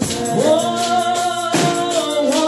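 A woman singing a gospel song into a microphone, holding long sliding notes, while shaking a tambourine in rhythm. The phrase breaks briefly about halfway through before she sings on.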